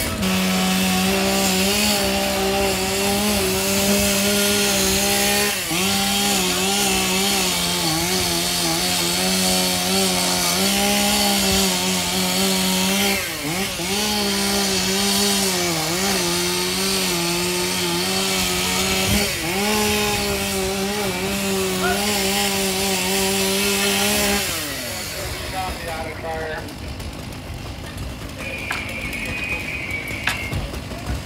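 A two-stroke chainsaw running at high revs, cutting a ventilation opening through a burning shingled roof. Its pitch dips several times as the chain bites into the roof. The saw winds down with a falling pitch about 24 seconds in.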